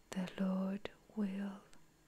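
Speech only: a soft, hushed reading voice speaking two short phrases, with a small click between them.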